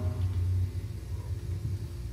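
The last chord of a rock song dying away, its upper notes fading within the first half-second over a deep bass rumble that drops in level about two-thirds of a second in.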